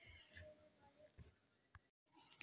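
Near silence: only a faint patter of rain falling on a wet concrete courtyard.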